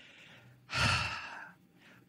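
A woman's sigh: one breathy exhale close to the microphone about a second in, fading away.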